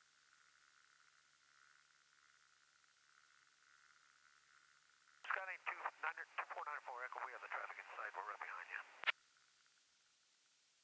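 A voice on the aircraft radio for about four seconds, thin and narrow-sounding, cut off by a click at its end. Before it there is only faint hum and hiss on the headset audio.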